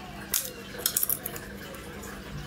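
A few short, sharp clicks: one about a third of a second in, then a quick cluster of three around one second.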